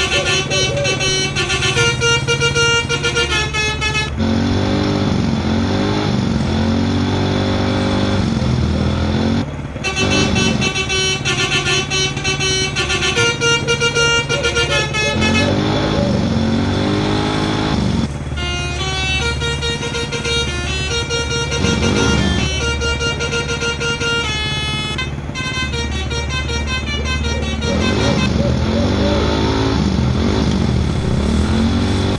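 Telolet horn playing tunes: multi-tone musical horn notes switching in short repeated patterns, over a music track with a steady low bass and a voice singing in places.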